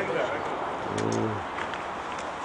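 A man's low voice holds a brief drawn-out vowel or hum for under half a second, about a second in, over faint outdoor background noise.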